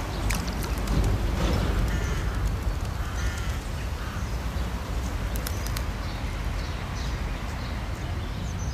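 Steady low outdoor rumble with a few short bird calls over it in the first half, and a few light clicks.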